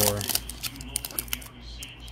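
A few light, irregular clicks and crinkles from a torn-open trading card pack's plastic wrapper and the chrome cards inside, as the cards are slid out of it by hand.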